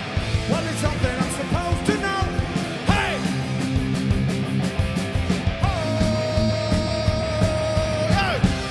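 Punk rock band playing live: electric guitars, bass and drums at full tilt, with a singer shouting short lines and then holding one long note near the end.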